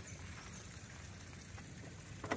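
Quiet outdoor ambience: a faint, steady hiss with no distinct event.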